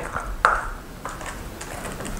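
A sharp click about half a second in, then faint ticks of Casio fx-85GT Plus calculator buttons being pressed to key in a sum.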